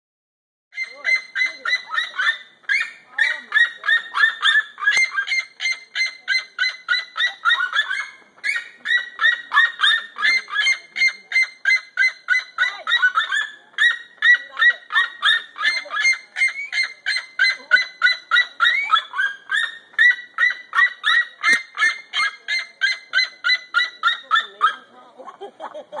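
A pair of crested seriemas screaming at each other: loud, rapid runs of yelping calls, several notes a second, kept up with only brief pauses. The calls start about a second in and stop just before the end.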